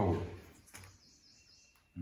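A man's voice finishing a word, then near silence: faint room tone with one soft click.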